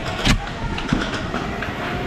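Clattering movement noise as a player runs forward and drops behind a cloth-covered bunker, with one sharp knock about a third of a second in.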